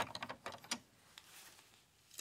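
Plastic Lego bricks clicking and knocking as a piece of the set is handled and taken off: a quick run of small clicks in the first second, then a couple of fainter ones.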